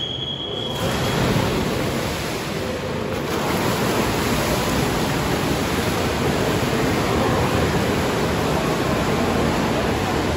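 A race start signal, a steady high tone lasting about a second, then the loud, continuous splashing of several swimmers racing freestyle.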